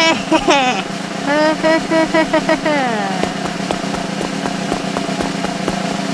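A cartoon character's high, wordless vocalising: a quick run of short rising and falling syllables over the first three seconds, ending in a falling glide, followed by a steady background tone.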